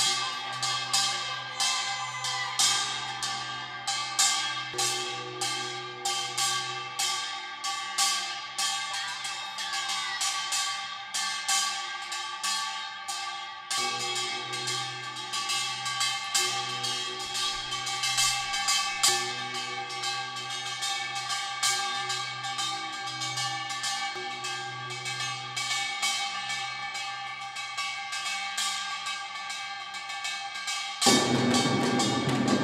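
Music with a steady beat of metallic, cymbal-like strikes, about two a second, over sustained ringing tones. It is the soundtrack of a Korean traditional drumming group's performance video.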